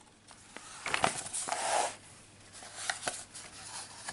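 Paper pages of a booklet being flipped by hand: a rustling sweep lasting about a second and a half, then a few lighter flicks and ticks as the pages settle.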